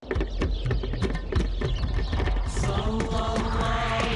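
A title-sequence soundtrack that starts abruptly: a fast clatter of percussive hits over a deep rumble. A sustained vocal chant joins about two and a half seconds in.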